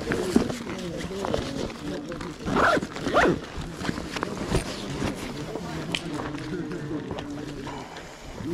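A backpack zip pulled shut in two quick strokes, about two and a half and three seconds in.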